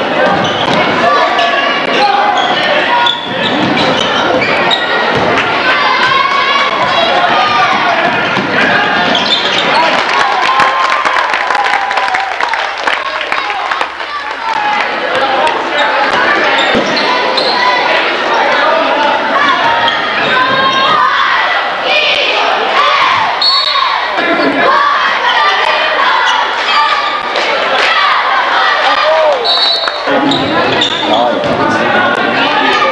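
A basketball bouncing on a hardwood court during play, under constant chatter and shouts from the spectators.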